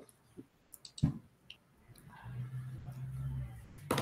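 A few faint small clicks and a soft knock, then a low steady hum lasting about a second and a half, heard over a video-call connection.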